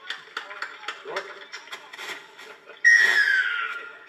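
A referee's whistle blown once, sudden and loud nearly three seconds in, its pitch sliding down as it fades over about a second, signalling a try. Before it, faint shouts from players and scattered clicks.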